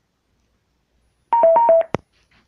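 Four quick electronic beeps alternating between a higher and a lower pitch (high, low, high, low), starting about one and a half seconds in, followed by a single short click.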